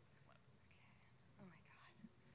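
Near silence with faint, quiet talk or whispering between two women away from the microphone.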